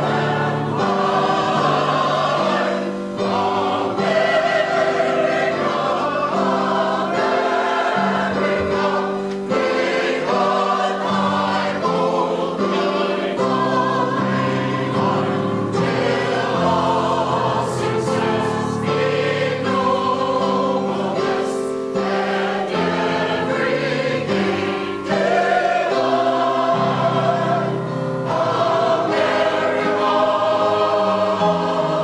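A community choir, mostly women's voices, singing together in continuous phrases, with a few brief dips between phrases.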